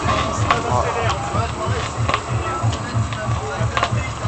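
Electronic dance music played from vinyl records on DJ turntables through a sound system, with a steady repeating bass beat.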